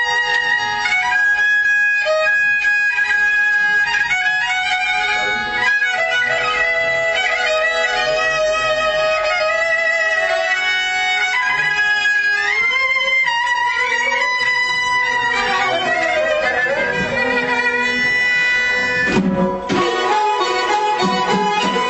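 Kamancha, the Azerbaijani bowed spike fiddle, playing a solo mugham melody with long held notes and slides between them. A brief break and a low thump come just before the end.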